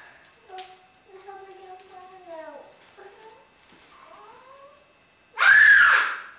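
Young children's high voices making wordless sing-song or meow-like calls, then a loud child's shriek just before the end.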